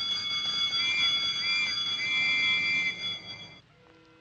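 An alarm bell ringing loudly and continuously, its high tones wavering slightly, then cutting off suddenly about three and a half seconds in.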